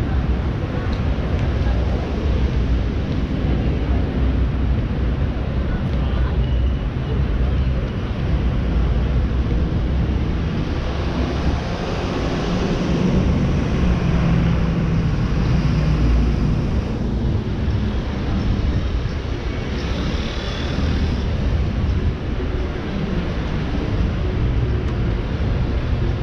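Road traffic on a city street: a steady low rumble of passing cars that swells a little about halfway through.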